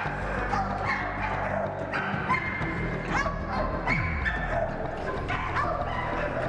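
Dog barking repeatedly, a bark about every half second to a second, over music.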